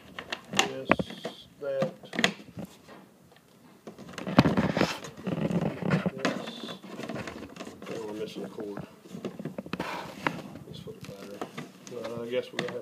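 Handling noises from a refrigerant identifier kit's hard plastic carrying case: scattered clicks and knocks, with a longer spell of rustling and rattling about four seconds in as a coiled hose is pulled out of its foam-fitted tray.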